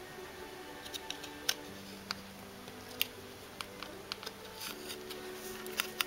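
Hard plastic figure parts being handled while a detachable wing is fitted to a dragon figure: about eight light, sharp clicks and taps at irregular moments. Soft background music with long held notes plays underneath.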